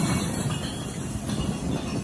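Large overturned street recycling container rolling on its side over asphalt: a continuous low rumble and rattle.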